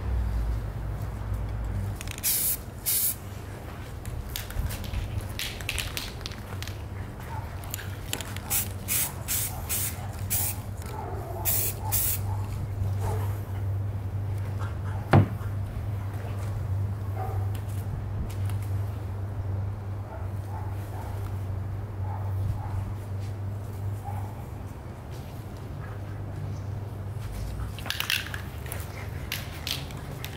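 Aerosol can of black Rust-Oleum camouflage spray paint hissing in short bursts, sprayed through netting onto a rifle, several in a quick run early on and a couple more near the end. A single sharp click about halfway through, over a steady low hum.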